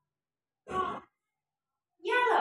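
A single short vocal sound from a person, under half a second long, a little past the middle, with silence before and after it.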